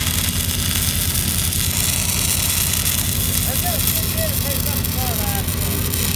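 Stick-welding arc crackling and hissing steadily as an electrode burns along a pipe root pass, over the steady drone of an engine-driven welding machine.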